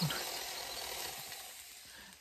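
A woman's breathy laugh with hardly any voice in it, a hiss of breath that fades out over about a second and a half.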